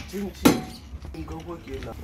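A hand tool clinking on metal parts in a car's engine bay: one sharp metallic clink about half a second in, amid quieter handling.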